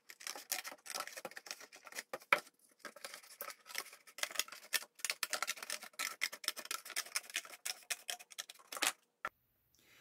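Scissors cutting around the rim of a paperboard food bucket: a dense, ragged run of crisp snips and crackles with a short pause about two and a half seconds in, cutting off suddenly near the end.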